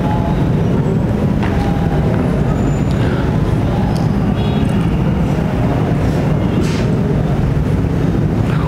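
A steady, loud, low rumbling noise with no clear rhythm or pitch.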